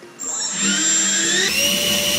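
Brushless electric ducted fan (EDF) running submerged in a water-filled pipe loop, its whine climbing in pitch as it spins up. From about one and a half seconds in it holds a steady high whine.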